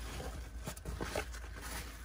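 Fabric dump pouch rustling and brushing as it is turned over in the hands, with a few faint light taps about a second in.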